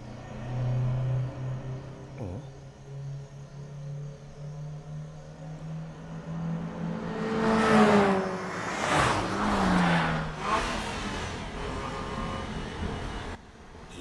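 Sports-car engines running hard on a road: a steady engine drone that slowly rises in pitch, then loud passes about eight and ten seconds in, each with a quick glide in engine pitch.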